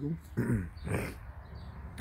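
A man clearing his throat: a short voiced grunt followed by a rough, noisy burst about a second in.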